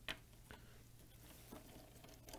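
Near silence: a few faint clicks of a screwdriver working a screw in the plastic coil housing, the clearest just at the start, fainter ones about half a second and a second and a half in, over a faint steady room hum.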